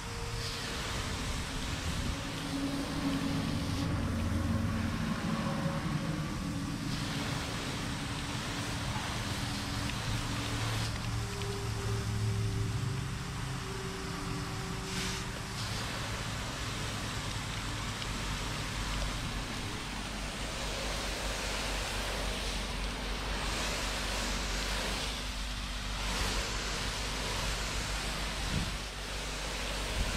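Hose spray nozzle rinsing soapy water off a painted car door panel: a steady hiss of water spray hitting the panel. Early on, a wash mitt scrubbing the soapy panel, with a low hum underneath through the first half.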